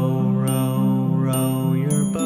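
Instrumental children's background music: sustained pitched notes over a light percussive beat, with no singing.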